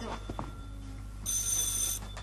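Dial desk telephone ringing: one ring starts a little past halfway and cuts off suddenly as the receiver is lifted.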